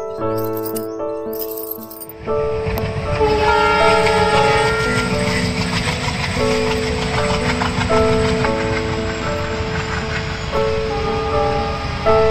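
Passenger train passing, a steady rumble and clatter of coaches on the track that starts about two seconds in, under background music with a simple melody.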